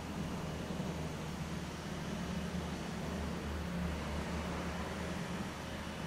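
Steady low hum and faint hiss of room background noise, with no distinct sounds standing out.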